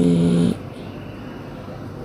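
A woman's voice holding a drawn-out syllable for about half a second at the start, then a quiet room with little else.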